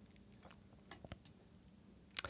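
Near silence: room tone with a low hum, and a few faint clicks about a second in.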